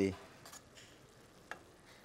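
Faint, steady sizzle of braising sauce simmering in a skillet, with a single light click of metal tongs about a second and a half in.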